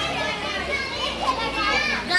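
A group of children shouting and chattering over one another as they play, several voices overlapping at once.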